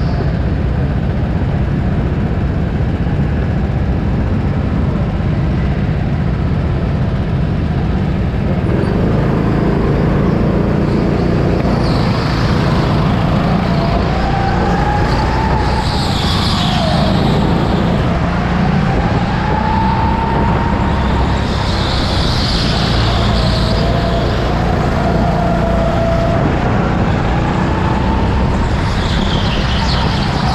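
Go-kart driven on an indoor track, heard onboard: a steady low rumble with a motor whine that rises and falls in pitch with speed from about a third of the way in, and brief high squeals a few times.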